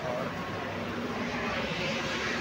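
Steady rumble of vehicle traffic on a city street, an even noise with a low engine hum.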